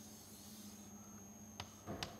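Chalk on a chalkboard, faint: a soft high hiss of a drawn stroke over the first second, then two short taps near the end, over a steady low room hum.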